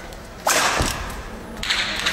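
A badminton racket swung overhead in a smash, with a sudden sharp hit of the strings on the shuttlecock about half a second in that dies away quickly. A second burst of noise follows near the end.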